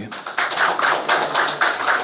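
Applause: a dense run of quick hand claps from an audience.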